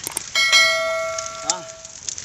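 Subscribe-button notification sound effect: a couple of quick mouse clicks, then a bright bell ding that rings and fades over about a second and a half.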